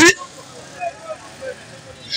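A man's loud preaching voice breaks off at the start, leaving faint street background: a low traffic hiss with a few distant voices.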